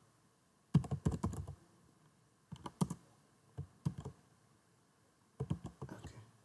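Typing on a computer keyboard: four short bursts of keystroke clicks separated by brief pauses.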